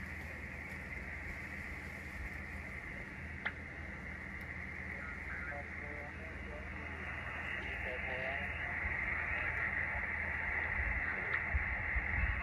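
Receiver static from the speaker of a Xiegu X6100 HF transceiver on the 20 metre band: steady band noise cut off sharply above the voice range, with faint warbling traces of weak signals now and then. The noise grows somewhat louder over the last few seconds.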